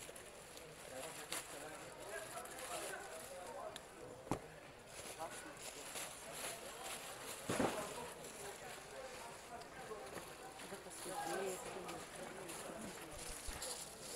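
Faint background chatter of several voices, with plastic wrapping rustling as handbags are unpacked and a couple of short knocks, one a little after four seconds in and another about seven and a half seconds in.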